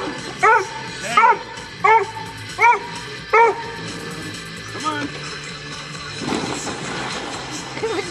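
A dog barking in a regular series, six barks about 0.7 s apart, then one fainter bark about five seconds in. A rushing noise fills the last two seconds.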